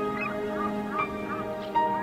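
Gulls giving several short cries in the first second and a half, over soft background music of long held notes.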